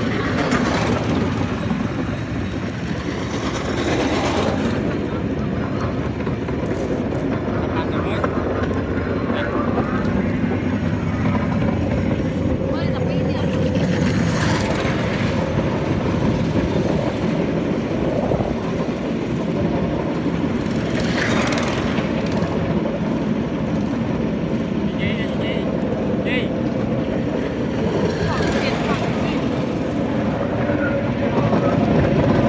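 Bamboo train (norry) running along the track: a steady engine drone and rumble of wheels on the rails, with several brief louder rushes of noise.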